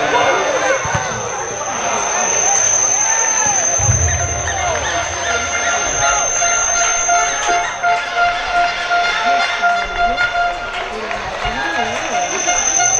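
Players and spectators calling and shouting across a football pitch, several voices overlapping. A steady high-pitched whine runs through most of it, and a held tone joins in for several seconds in the second half.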